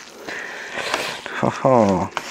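Cooked instant noodles being tossed and stirred with wooden chopsticks in an aluminium tray: a soft, wet rustling for about a second and a half. Near the end a man gives a short vocal exclamation that falls in pitch.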